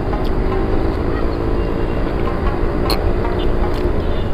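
A steady low rumble with a faint, even engine drone running under it, like a distant motor.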